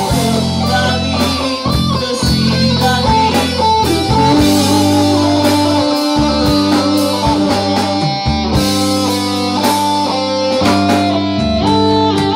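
Live rock band playing an instrumental passage: electric guitars through amplifiers over a TAMA drum kit, loud and steady with a regular drum beat.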